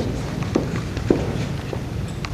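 High-heeled footsteps on a wooden stage floor, about two steps a second, with low room noise underneath.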